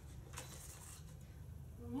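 Quiet room tone with a steady low hum and a faint click about half a second in; a woman's voice starts right at the end.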